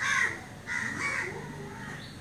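A bird calling twice in short, harsh calls, one at the very start and one about a second in.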